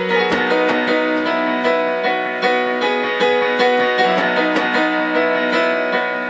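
Electronic keyboard with a piano sound, playing steady repeated chords, a new chord struck a little over once a second, as the accompaniment of a song between sung lines.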